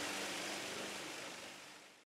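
Wood chipper running and blowing wood chips into a trailer: a steady rushing noise with a low hum, fading out near the end.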